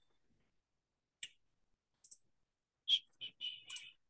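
Scattered light clicks from a computer, picked up by a video-call microphone: single clicks about a second and two seconds in, then a short quick run of clicks near the end.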